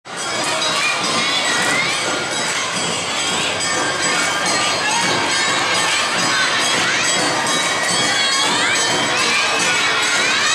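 Awa odori street dance: a troupe of children shouting dance chants over busy crowd noise, with festival band music behind.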